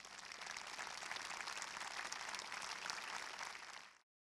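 Audience applauding: a dense patter of many hands clapping that swells up at the start, holds steady, then cuts off suddenly near the end.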